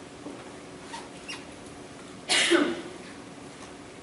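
A person coughing once, sudden and loud, a little past halfway, over quiet room tone with a few faint clicks earlier on.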